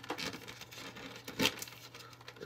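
Hard plastic toy case and its clear plastic sheet being handled and pressed into place: light crinkling and small plastic clicks, with one sharper click about one and a half seconds in.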